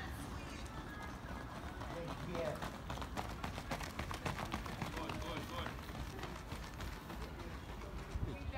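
Quick, repeated footfalls of a group of runners sprinting past on a synthetic track, loudest from about two and a half to six seconds in.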